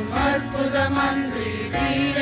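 Voices singing a devotional song over steady sustained instrumental backing.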